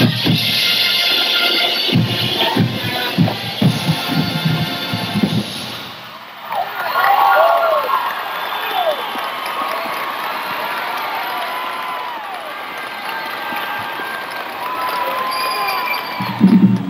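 Marching band playing brass and drums, with drum strikes, until the music ends about six seconds in. A stadium crowd then cheers, with shouts and whistles.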